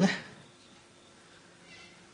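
A man's voice breaks off at the very start, followed by a pause holding only faint background hiss.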